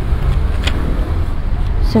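A steady low rumble, with one faint tick about two-thirds of a second in.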